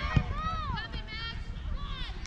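Girls' voices shouting and calling out across a soccer field in high, drawn-out calls, over a low rumble of wind on the microphone. One sharp knock comes just after the start.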